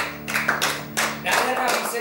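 A few people clapping irregularly as a song ends, over the band's last acoustic-guitar chord ringing out and dying away near the end.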